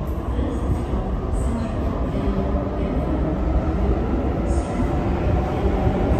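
Sydney Trains Tangara electric multiple unit approaching through the tunnel into an underground platform: a steady low rumble that grows louder, with two brief high squeaks.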